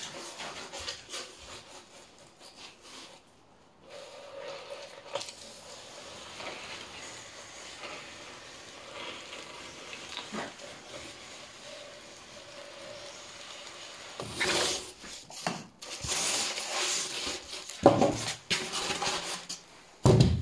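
A foam slab sliding and rubbing over a plywood table as it is pushed through a hot-wire foam cutter. Near the end come louder handling rustles and a sharp knock as the block is moved.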